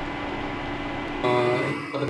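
Steady hiss and hum of a covered pan of chicken curry cooking on an induction cooktop. About a second in it cuts off and a man's voice begins.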